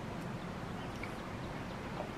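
Steady low outdoor background noise with a single faint bird chirp about a second in.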